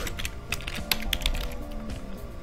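Computer keyboard typing: a run of separate keystrokes, heard over background music.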